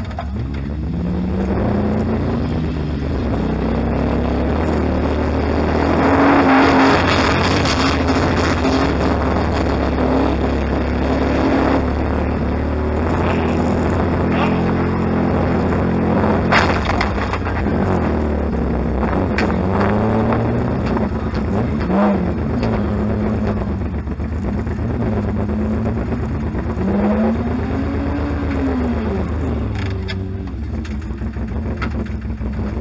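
Demolition derby car's engine heard from inside the stripped cabin, running and revving up and down again and again. Several sharp bangs of impacts come through, the loudest about halfway through.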